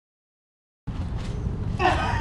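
Dead silence for almost the first second, a gap in the audio, then steady low outdoor background noise, with a person's voice starting near the end.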